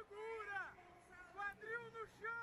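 Faint, high-pitched shouting from a voice at a jiu-jitsu match, in short rising-and-falling calls.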